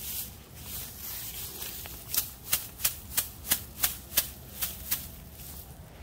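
Dry rice straw being handled, rustling and then crackling with a quick, even run of sharp snaps, about three a second for some three seconds.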